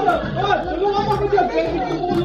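Several people talking over one another at once: overlapping group chatter with no single voice standing out.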